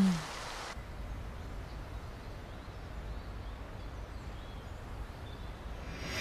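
Quiet background ambience: a low steady rumble with a few faint bird chirps. A higher hiss cuts off suddenly under a second in.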